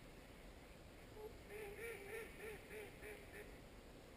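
Swans calling faintly: a quick series of about seven short honks, starting about a second in and lasting a couple of seconds.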